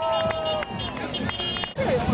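Street parade sound: many voices and shouts from marchers and the crowd over music, with scattered sharp claps or knocks. The sound cuts off abruptly near the end and picks up again with a different mix.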